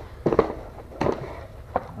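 Cardboard box being torn open by hand: a few sharp cracks and rips of the card.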